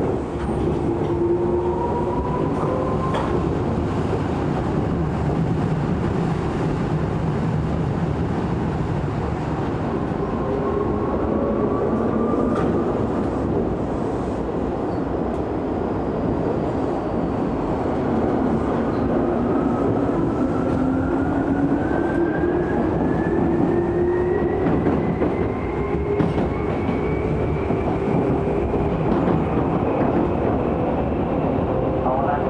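Inside a Tokyu 8500-series commuter train car, the train runs and accelerates. Its motor whine climbs in pitch in three rises, the last a long steady climb near the end, over the constant rumble of wheels on rail with a few sharp clicks.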